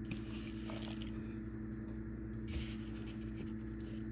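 A steady low electrical hum, with faint soft rustling and a light scrape from shredded cheese being spread by hand over the top of a lasagna in an aluminium foil pan.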